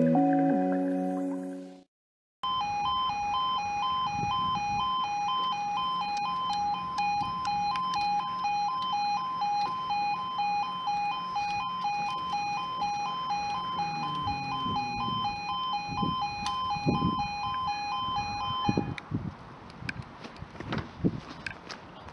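Sawston level crossing's two-tone road warning alarm, alternating evenly between two high pitches while the road lights flash and the barriers lower, the warning ahead of an approaching train; it cuts off suddenly about nineteen seconds in. Before it, the tail of intro music fades out in the first two seconds.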